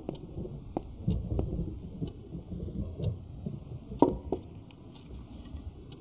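A few soft clinks and taps of plates and cutlery at a dinner table as food is served, over a low, dull background.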